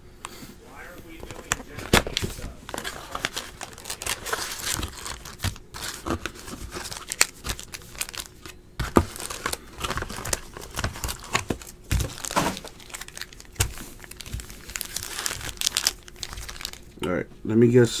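Plastic wrapping on a Donruss Optic baseball card box and packs being torn open and crinkled by hand, in a run of irregular crackles and rips.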